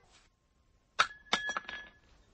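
A wine glass knocked over: a sharp clink about a second in, then a few quicker clinks with a clear glassy ring.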